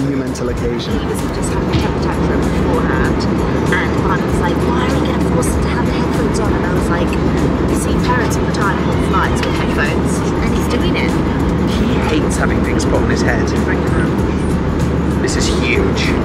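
Steady low drone of an airliner cabin, with a woman's voice talking over it.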